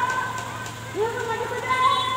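Several people's voices calling and talking, with a vehicle driving past close by.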